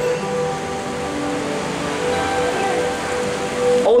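Soft background music of sustained keyboard chords, one note near the middle held steadily throughout, over a steady hiss.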